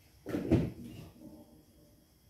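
A single short, dull thump with a brief rattle, about half a second long, a quarter of a second in.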